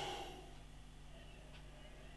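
Quiet room tone with a steady low electrical hum and one faint tick about one and a half seconds in.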